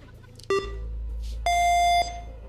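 Game-show countdown timer beeping as the time runs out: a short beep about half a second in, then a longer, higher-pitched final beep about a second and a half in that signals time is up.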